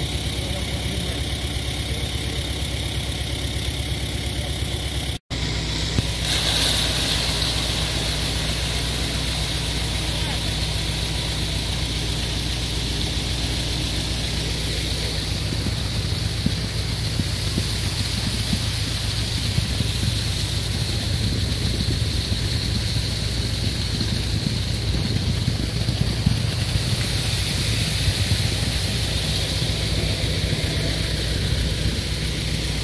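Concrete mixer truck's diesel engine running steadily while concrete is discharged down the chute, broken by a brief dropout about five seconds in.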